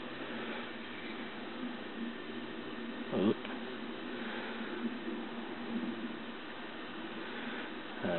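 Steady low background hiss inside a parked vehicle's cab, with one brief short sound a little after three seconds in.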